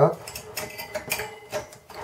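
Light clicks and rattles of power supply cables and plastic connectors being handled against the metal chassis of a Dell Optiplex GX270 desktop, about four separate taps roughly half a second apart.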